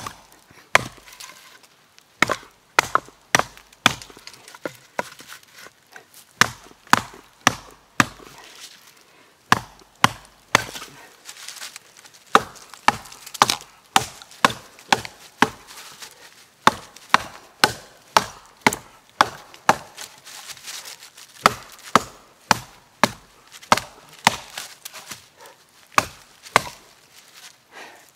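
Small camp hatchet with a boron steel head chopping wood: a long series of sharp chops, one or two a second, with a few short pauses between runs.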